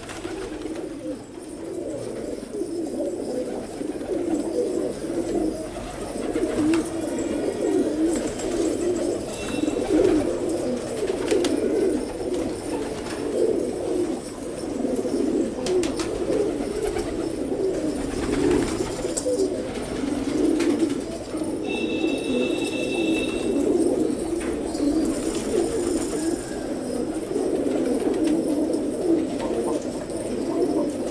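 A flock of domestic fancy pigeons cooing continuously, many low, burbling calls overlapping into one steady chorus. A brief high tone sounds once, about two-thirds of the way through.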